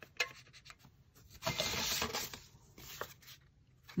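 Hands handling art supplies on a craft table: a sharp click just after the start, then about a second of paper scraping, with a few fainter clicks afterward.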